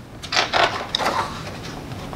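Page of a picture book being turned by hand: a short run of paper rustles within the first second or so.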